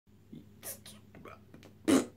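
Faint breathy mouth noises and whispering from a man, then near the end a short loud burst of breath as he starts to blow a raspberry with his tongue out.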